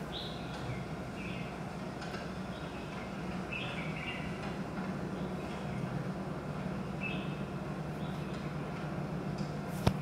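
Outdoor ambience from a video clip played back over room speakers: short bird chirps every second or so over a steady low hum. A single sharp click comes just before the end.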